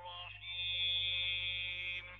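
A man's voice chanting Quran recitation with tajwid, drawing out one long held vowel for about a second and a half before it breaks off.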